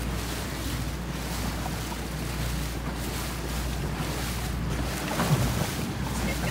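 A boat's motor running with a steady low drone, under the wash of water and wind buffeting the microphone. A brief, louder sound comes about five seconds in.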